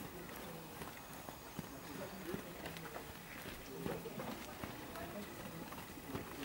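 Hoofbeats of a horse trotting on a sand dressage arena: soft, quick footfalls, with faint voices murmuring in the background.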